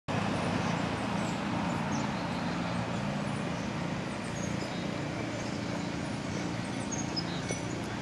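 Outdoor ambience: a steady wash of background noise with a faint low hum under it, and faint high bird chirps now and then.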